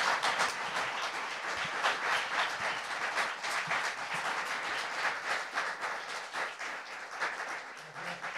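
Audience applauding, many hands clapping in a dense, steady patter that eases slightly in the second half.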